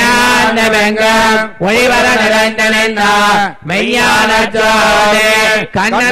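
Male chanting of Hindu mantras in a steady, near-monotone recitation. Long held phrases are broken by short pauses about every two seconds.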